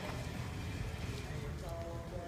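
Indoor arena ambience: a steady low rumble of the hall with faint background voices.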